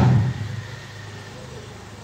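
A man's spoken word trailing off through a microphone, then a pause of room tone with a faint steady low hum.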